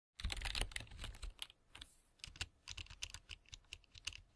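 Keyboard typing: quick, irregular key clicks, thick at first, thinning out briefly partway through, then picking up again.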